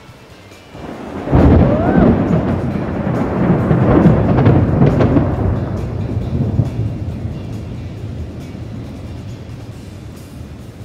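Thunder after a nearby lightning strike: a rumble that breaks in suddenly about a second in, stays loud for several seconds, then slowly dies away.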